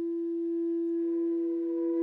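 A single long note held at one steady pitch in a contemporary chamber-ensemble recording, nearly a pure tone with only faint overtones, played by a woodwind. It swells slightly near the end.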